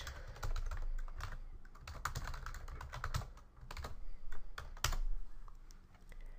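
Typing on a computer keyboard: an irregular run of key clicks, with a short pause about halfway through.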